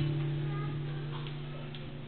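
Live instrumental music, guitar and bass notes held and slowly dying away at the end of a phrase.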